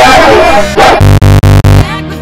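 Loud, distorted edited audio: music mixed with a dog-like cry, then a harsh buzzing tone chopped into four rapid stuttered repeats that stops abruptly.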